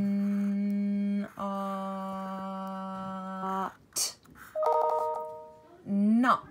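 A woman's voice sounds out the word 'not' slowly, holding each sound. First comes a long steady hum of 'nnn', then a long held 'ooo' vowel on the same pitch, then a short clipped 't'. A shorter, higher-pitched held voice sound follows, and a rising syllable near the end.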